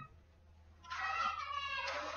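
An animal call: one drawn-out, high-pitched cry lasting about a second and falling in pitch, starting about a second in.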